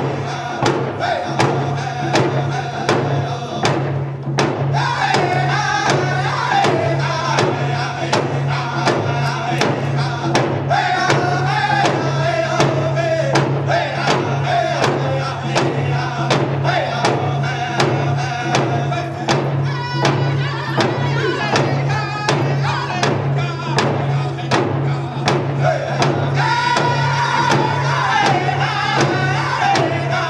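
A group of singers singing together in unison over a steady, even hand-drum beat, in a hand drum song.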